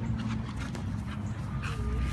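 Doberman panting in short irregular breaths, with a brief whine near the end, over a steady low background rumble.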